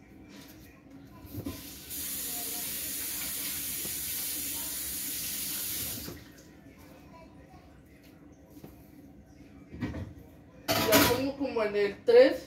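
A kitchen tap turned on, running steadily for about four seconds, then shut off. Near the end, a loud voice breaks in.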